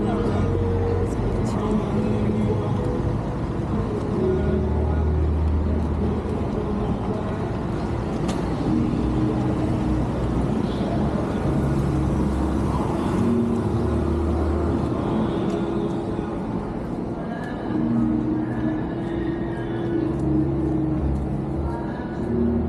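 Busy city street ambience: indistinct voices of people nearby and car traffic, with music playing in the background.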